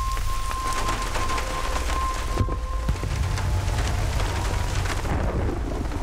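Heavy rain pouring down and splashing on pavement, with a continuous low rumble beneath it.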